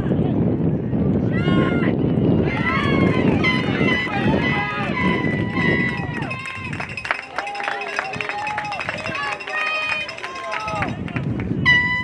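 Players and spectators shouting and calling out across a soccer pitch, many short raised voices. Low wind rumble on the microphone in the first half, then scattered sharp knocks and a brief steady high tone near the end.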